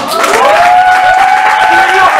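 Audience applauding loudly, with long, drawn-out cheering voices over the clapping.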